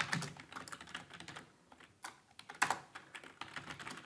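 Computer keyboard keys clicking in irregular runs of typing, with a louder cluster of keystrokes a little past halfway.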